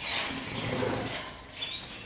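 A caged cucak jenggot (grey-cheeked bulbul) moving about its wire cage. There is a brief scuffle at the start, then rustling of wings and feet, with a short high chirp about one and a half seconds in.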